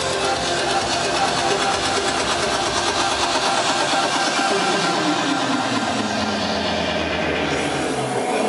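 Loud electronic dance music from a DJ set, heard from within the crowd. About halfway through the deep bass thins out and a tone slides steadily downward in pitch, as in a breakdown.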